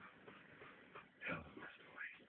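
A Yorkshire terrier gives a brief whimpering yelp a little over a second in, during a play fight between two Yorkies.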